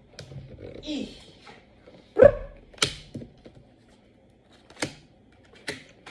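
One brief, loud, bark-like call about two seconds in, the loudest sound here, among a few sharp clicks and taps.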